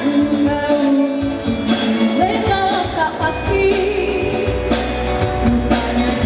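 A woman singing a Malay pop song live into a handheld microphone, accompanied by drums and bass. The low end grows fuller about three seconds in.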